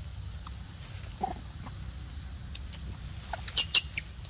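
A macaque eating a mango, with a few short, sharp mouth clicks. Two of them come close together near the end and are the loudest. Under them run a thin, steady high tone and a low rumble.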